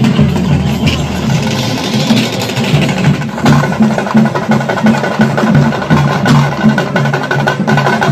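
Processional folk percussion: drums beaten in a steady rhythm of about three beats a second, with sharp wooden clicks over them. A steady high tone joins about three seconds in.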